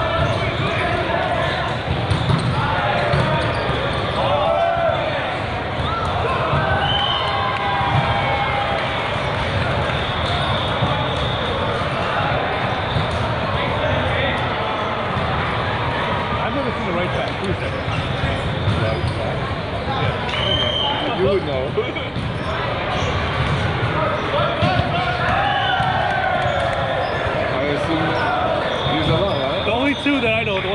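Reverberant hubbub of a large hall full of volleyball courts: many people talking and calling out at once, with volleyballs being struck and bouncing on the hard court floor.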